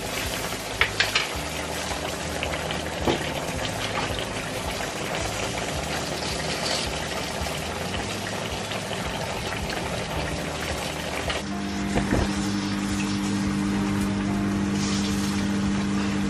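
Creamy mushroom sauce with chicken simmering and sizzling in a frying pan, with a few light clicks of a wooden spoon early on. From about two-thirds of the way through, a steady low drone joins in.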